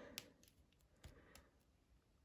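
Near silence with a few faint clicks, one just after the start and a few more about a second in: the plastic knee joints of an action figure being bent by hand.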